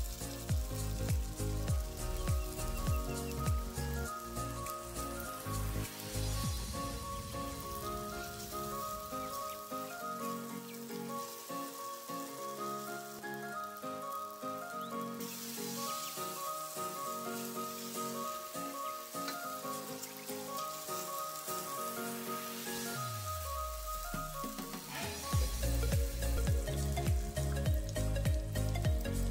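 Chopped onion and paste sizzling in a hot wok as it is stirred, under background music with a melody. The music's bass drops out for a long stretch in the middle and comes back after a falling sweep near the end.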